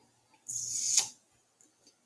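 A short, sharp breath from a man at the microphone: a hissing exhale about half a second long that grows louder and stops abruptly.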